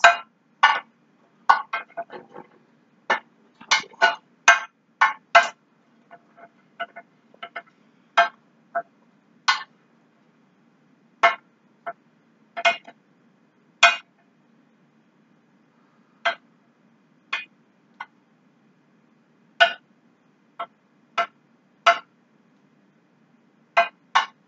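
A utensil clinking and knocking against cookware as mushrooms are tossed in sauce: irregular sharp clinks, quick and close together for the first few seconds, then spaced a second or more apart. A faint steady low hum runs underneath.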